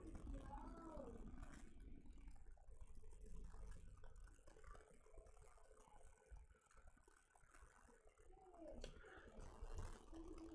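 Near silence: room tone, with a few faint soft sounds just after the start and again near the end.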